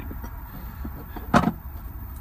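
One sharp clunk of an object being handled, a little past halfway through, over a steady low hum.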